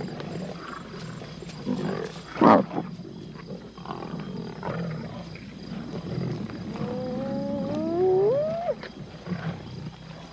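Lions at a carcass growling and snarling low over their food, with a short, sudden loud snarl about two and a half seconds in. Near the end a lion cub gives a whining call that rises in pitch as an adult muscles in on the bone it is chewing.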